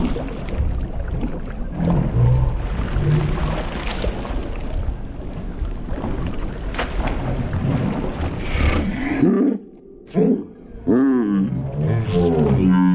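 Muffled rumble of pool water sloshing and splashing right at a camera held at the water's surface, with a few sharp splashes. It cuts out briefly near the end, then raised voices, like shrieks or laughter, come in.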